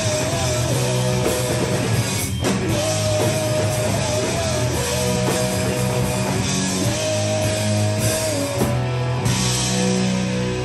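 Live rock band playing loud: distorted electric guitars, bass and drum kit, with a melodic line repeating about every two seconds. The band stops for a moment about two seconds in.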